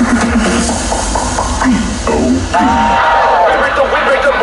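Performers' amplified voices through the show's sound system, with a high, drawn-out vocal call starting about two and a half seconds in, over low crowd noise.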